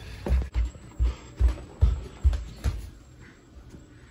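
Footsteps with thumps about two a second, along with handling noise from the hand-held camera; they die away after about three seconds, leaving a low rustle.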